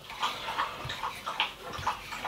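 Kitchen knife slicing through soft boiled pig skin onto a wooden chopping board: a few faint taps and slicing sounds.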